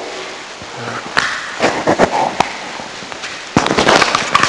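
Room noise with a few sharp clicks and knocks spread through it, and a brief faint murmur.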